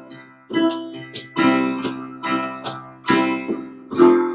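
Acoustic guitar and keyboard piano playing chords together in an instrumental passage of a song. The chords are struck in a steady rhythm, and each one fades away before the next.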